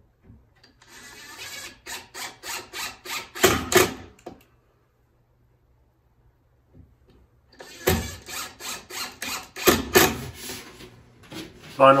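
Cordless drill driving pocket screws into pine boards, in two runs of repeated pulses about three a second: one from about a second in to about four seconds, the other from about eight to eleven seconds.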